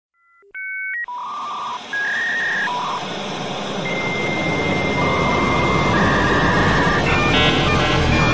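Intro sound design of electronic beeps: a row of steady tones, some in pairs, like telephone dialing tones, over a hiss that sets in about a second in and swells louder. Near the end the beeps turn into a quick chatter, leading into the theme music.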